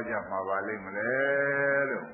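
A male monk's voice preaching a sermon in Burmese, ending on one long, drawn-out syllable held for about a second.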